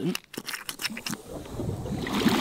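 Swimming pool spa jets switched on by a push-button: a few short clicks, then a rush of churning, bubbling water that builds from about a second and a half in.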